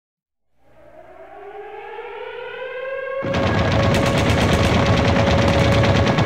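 Opening of a black/thrash metal song: a siren-like wail rises slowly in pitch and grows louder. About three seconds in, distorted guitars and rapid drumming come in suddenly, and the wailing tone holds on underneath.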